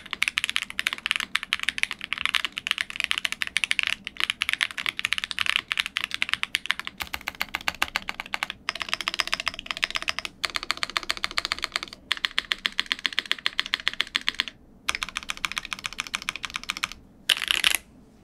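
Wuque Studio Promise87 tenkeyless mechanical keyboard, fitted with Ube Crinkle Cookie switches, an aluminium plate, supercritical plate foam and no case foam, being typed on fast: a dense, crisp run of keystrokes broken by a few short pauses.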